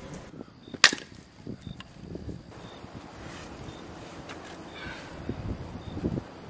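Firewood being handled: one sharp wooden crack a little under a second in, then softer knocks and rustling as the wood is moved about.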